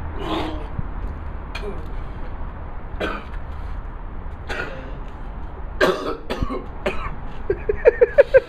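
A man coughing and clearing his throat in about six short, separate bursts after vomiting.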